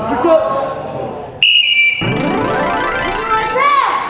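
Edited-in TV sound effects: a sudden bright electronic ding about a second and a half in, held for about half a second, then a sound that rises steadily in pitch over about two seconds as a title card comes up. Voices are heard before the ding.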